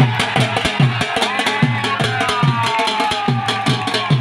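Dhol drum played in a fast, steady beat: about three deep strokes a second, each dropping in pitch, with sharp stick clicks between them. A long high note slides slowly downward over the beat from about a second in.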